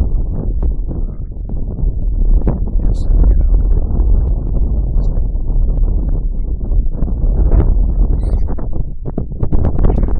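Wind buffeting the microphone: a loud, uneven low rumble that swells and dips, with a few sharp knocks near the end.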